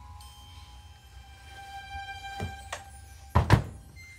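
The door of a Samsung front-loading washing machine being swung shut, two loud thunks in quick succession near the end, with a smaller knock a little before. Background music of held, chime-like notes runs underneath.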